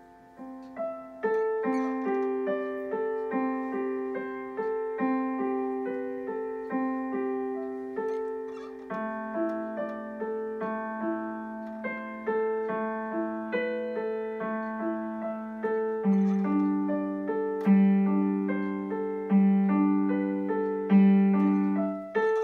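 Digital piano being played: a flowing piece of notes struck in a steady rhythm, each ringing and fading. About two-thirds of the way through, the bass drops lower and the notes grow louder.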